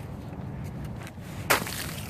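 A chunk of ice struck on pavement, giving one sharp crack about one and a half seconds in as it breaks into chips, over low outdoor noise.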